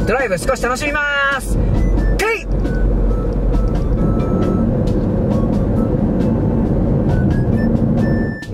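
Steady low road and engine noise of a car being driven, with background music over it; a voice is heard in the first two seconds or so.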